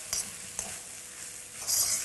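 Cold cooked rice sizzling in a hot wok as it is stirred and tossed with a spatula, with short louder bursts of hiss and scraping just after the start and near the end.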